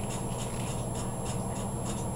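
Steady low hum with faint, evenly spaced high ticks about four times a second; no distinct handling sound stands out.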